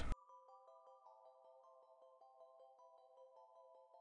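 Faint background music: a soft synthesizer melody of held notes that step from one pitch to the next, with a light regular tick.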